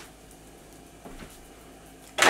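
Quiet kitchen room tone with a low steady hum and a faint brief sound about a second in.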